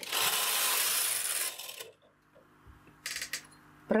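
Knitting machine's metal needle bed being worked by hand: a rasping metallic slide lasting about two seconds, then a brief run of rapid clicks about three seconds in.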